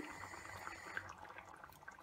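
Faint bubbling of a pan of fish curry gravy simmering, with scattered small pops over a low hiss.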